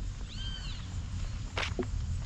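A single short animal call, rising then falling in pitch, over walking footsteps and a steady low rumble.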